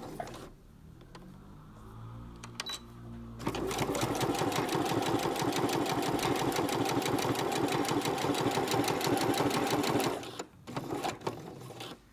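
Domestic electric sewing machine sewing a straight stitch through felt and fabric. It runs slowly at first, then picks up to a fast, steady stitching rhythm for about six seconds and stops about ten seconds in. A few separate clicks follow near the end.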